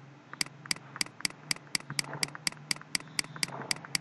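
Computer mouse button clicked repeatedly at a steady pace, about four sharp clicks a second, while stepping a scrollbar down. A faint low hum runs underneath.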